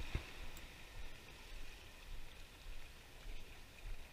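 Faint, steady hiss of calm sea water washing against shoreline rocks, with a little low rumble.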